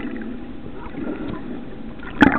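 Underwater ambience picked up by a submerged camera: a steady low rush of water with faint scattered clicks and crackles.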